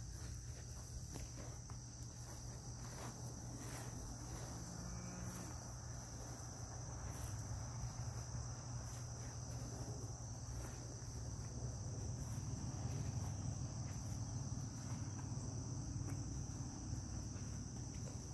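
Steady chorus of insects, a continuous high trill, with scattered soft rustles and clicks over it.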